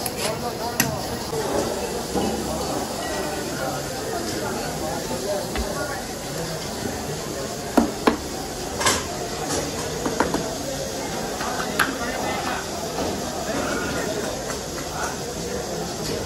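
Busy restaurant kitchen ambience: background voices and a steady clatter, with scattered sharp knocks and clinks of utensils, the loudest a few seconds past the middle.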